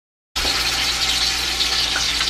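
Seasoned chicken pieces frying in hot oil in a pot: a steady sizzling hiss that starts abruptly about a third of a second in, with a low steady hum beneath it.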